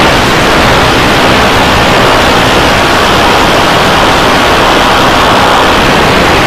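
Very loud, steady static-like noise covering every pitch: audio that heavy video-effects processing has distorted and blown out into clipping.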